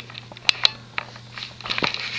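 A few light, sharp taps and clicks of movement close to the microphone, over a steady low hum.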